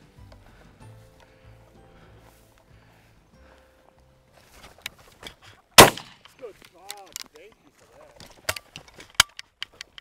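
A shotgun shot about six seconds in, the loudest sound, at a flushed sharp-tailed grouse, followed by a few sharp clicks and a second, quieter crack near the end. Soft background music plays over the first few seconds.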